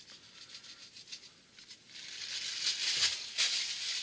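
Celery salt being shaken from its container onto mashed vegetables, with the plastic bag over the hand crinkling. A dry rattling rustle that grows louder about halfway through and is loudest near three seconds.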